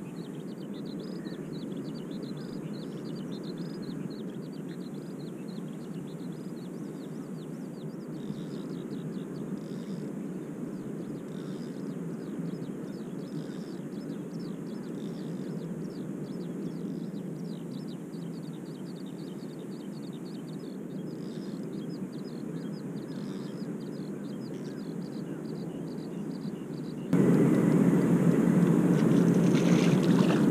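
Steady low outdoor rumble with a faint, rapid high flicker above it; near the end it abruptly becomes much louder and fuller.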